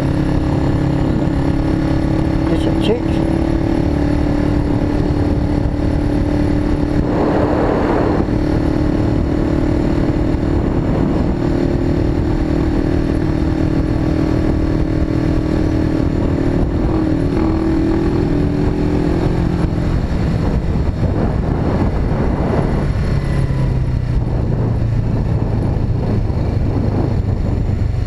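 Suzuki GS500E's air-cooled parallel-twin engine running at a steady cruise on the road, with wind rushing over the microphone. Near the end the engine note drops lower.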